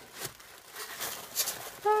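Soft rustling and crinkling of tissue paper and a clear plastic stamp package being handled, in a few brief faint bursts.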